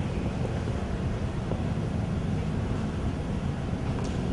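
A steady rushing noise, strongest in the low end, with no tune or beat: the noise-only lead-in of a song track before the music starts.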